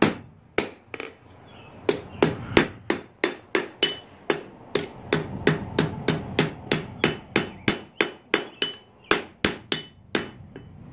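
Hand hammer striking a red-hot steel knife blade on an anvil, each blow ringing. A few spaced blows, then a steady run of about three blows a second that stops near the end.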